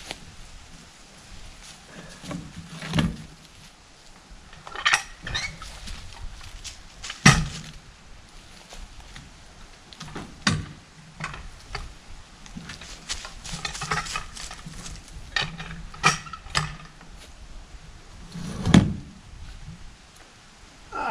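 A maple log being levered up a plank ramp into a pickup bed with a steel cant hook: a handful of sharp knocks and metallic clinks, a few seconds apart, with scraping between them.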